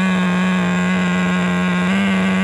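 Small two-stroke nitro glow engine of an RC car running at high speed with a steady, unchanging pitch while its carburettor is being tuned with a screwdriver.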